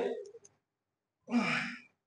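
A man's sighing exhale of effort, once, about halfway through, short and breathy with some voice in it, while he lifts a pair of dumbbells.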